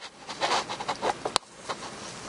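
Many metronomes ticking out of step with one another, heard faintly through a laptop's small speakers as a scatter of irregular light clicks, with one sharper click about a second and a half in.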